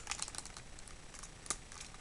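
Light plastic clicks and taps of fingers working the parts of a G1 Triggerhappy Transformers figure, folding out the back supports on its feet, with one sharper click about one and a half seconds in.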